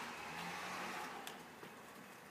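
Quiet room tone: a steady faint hiss with a faint low hum early on and a couple of soft clicks around the middle.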